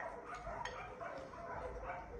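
A dog eating a mix of dry kibble and wet food from a ceramic bowl: faint, irregular crunching and clicks as it chews.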